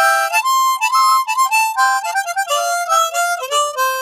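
East Top 10-hole diatonic harmonica in the key of C, played as a quick riff of shifting single notes and chords.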